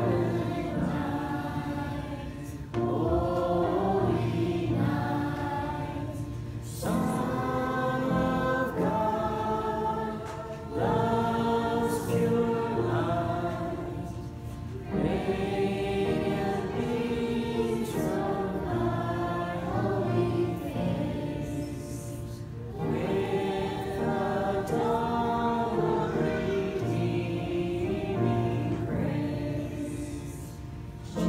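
A group of voices singing a slow hymn in phrases about four seconds long, with short breaks between phrases.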